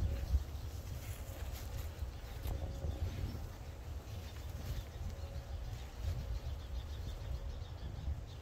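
Soft rustling and brushing of rope and gloved hands as a rope is looped into a daisy chain. Under it runs a steady low rumble with a faint hum.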